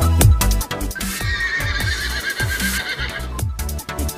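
Electronic dance music with heavy bass and drum hits, with a horse whinny sound effect over it: a wavering, quivering high call lasting about two seconds in the middle.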